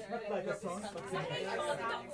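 Speech only: people talking, with voices overlapping.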